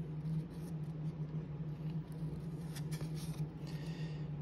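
1993 Leaf baseball cards handled in a stack, the top card slid off to reveal the next: faint card rustles and a few soft flicks, mostly in the second half, over a steady low hum.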